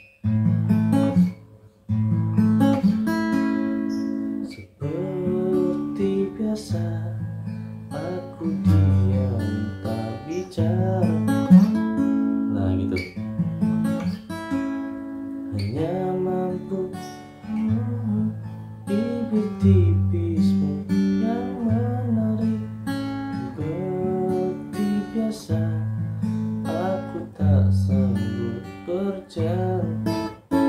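Acoustic guitar fingerpicked: plucked single notes and short riffs over ringing bass notes, with a brief break about a second in.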